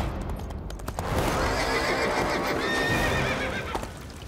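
Horse neighing: a few sharp knocks in the first second, then one long, wavering whinny lasting about three seconds, voicing the cartoon's ghost horse.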